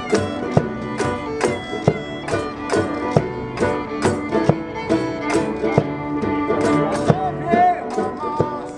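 Acoustic folk band playing an instrumental tune: fiddle lead over cello and banjo, with a steady thumping beat about two strokes a second.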